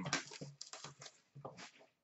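Faint, scattered crinkles and ticks of plastic shrink-wrap being torn and peeled off a cardboard hockey card box.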